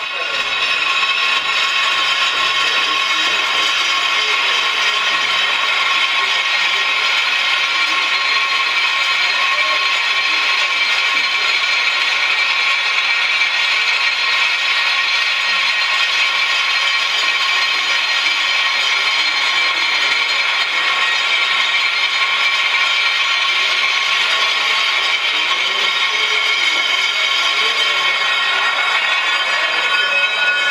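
Experimental drone music: a dense, unchanging mass of many sustained high tones over a rough noise. It swells up at the start and holds at full level from about a second in.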